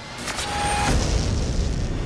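Film trailer sound effects: a loud rushing noise swells over the first second and holds, with a brief high tone about half a second in.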